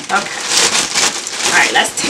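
Clear plastic bag crinkling and rustling as hands tug and pull it open, a dense crackle of many small crinkles.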